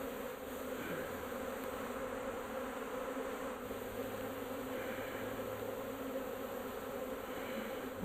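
A disturbed swarm of honey bees buzzing in a steady, even hum. The swarm is upset at being shaken out and handled.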